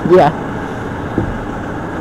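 Steady low workshop background rumble, like machinery running somewhere in the hall, with a single faint tap a little past the middle.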